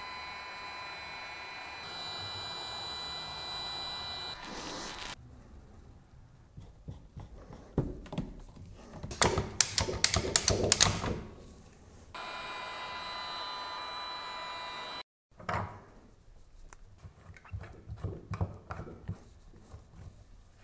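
Cordless heat gun running with a steady fan whine for about five seconds, its nozzle held into the end of flexible PVC tubing. It runs again for a few seconds later on. In between and afterwards come clusters of clicks and knocks as plastic fittings and tubing are handled and pushed together.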